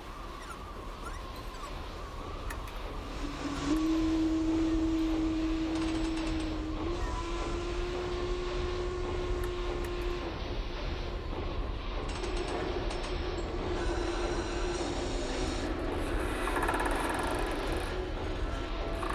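Designed machine ambience for a steam-powered flying craft: a steady low mechanical rumble. About three and a half seconds in it gets louder, and a sustained hum joins it that shifts pitch a few times.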